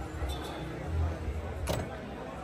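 Steady low background rumble with faint distant voices, and one short sharp click shortly before the end.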